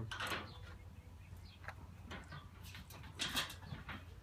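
Short scrapes and clicks of grill hardware being handled and fitted by hand, a few separate times, the loudest a little after three seconds in, over a steady low hum.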